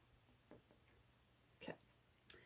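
Near silence: room tone, with one faint short tap about half a second in and a softly spoken "okay" near the end.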